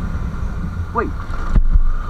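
Yamaha YZF-R15 motorcycle engine running steadily while riding at low speed, with a low wind rumble on the microphone. A louder low thump comes near the end.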